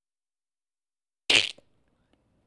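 A single short, sharp snort of laughter through the nose from a man close to the microphone, about a quarter second long, a little past halfway through.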